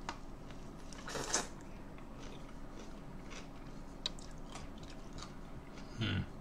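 A person biting into and chewing a soft pickle, with one louder bite about a second in and a few small mouth clicks during the chewing.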